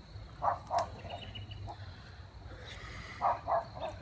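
Two pairs of short, quick sniffs: a person smelling wisteria blossoms up close.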